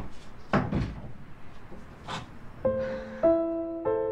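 A bedroom door pushed shut with a thump, followed by a couple of softer knocks and a rustle. Slow, single sustained piano notes begin about two-thirds of the way through.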